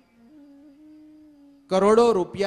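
A man's soft hum on a few held notes that step slightly in pitch, picked up by a close microphone. His voice comes back in loudly near the end.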